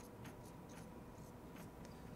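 Marker pen writing on a glass lightboard: a run of faint, short, high-pitched squeaks and scratches as each stroke is drawn, several a second.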